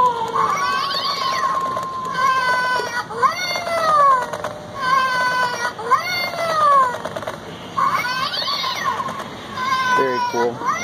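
Animated LED skeleton cat Halloween prop playing recorded cat cries through its small speaker: a string of wailing meows that rise and fall in pitch, about one every second or two.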